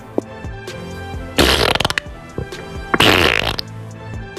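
Two comic fart sound effects, each about half a second long and fluttering, the first about a second and a half in and the second about three seconds in, over background music.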